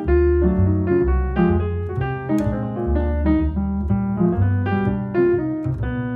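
Jazz piano solo, a quick run of single notes and chords, over plucked double bass notes. No singing.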